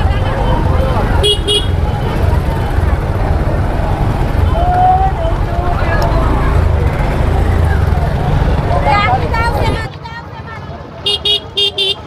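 Low rumble of a motorcycle ridden slowly through a crowded market, with people's voices around it; the rumble drops away about ten seconds in. A vehicle horn gives two short toots about a second in and several quick toots near the end.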